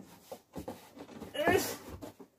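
Cardboard and plastic packing rustling as a heavy boxed vinyl figure is worked out of a large shipping box, louder about one and a half seconds in, with a brief strained voice sound at the same time.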